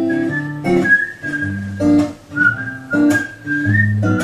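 A whistled melody over strummed acoustic guitar chords, in an instrumental passage of a live song. The whistle is a single clear line moving between a few held notes, while the guitar chords keep a steady strumming pattern underneath.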